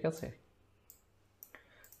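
A few computer mouse clicks: a single click about a second in, then several more close together near the end.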